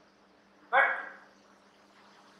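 A man's voice saying a single short word about a second in, in a pause in his lecture; otherwise near silence with a faint steady low hum.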